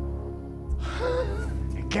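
A man gives an excited, breathy gasp from about a second in, over a steady low drone of background score.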